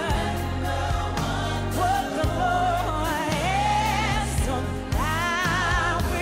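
Gospel worship music: singers with a wavering vibrato on the melody, backed by a band with electric guitar and a deep, sustained bass line.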